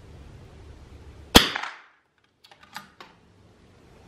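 A single .22 LR rifle shot with Lapua Long Range rimfire ammunition about a second and a half in, its sound dying away within half a second. A second later come four or five light clicks of the rifle's bolt being worked.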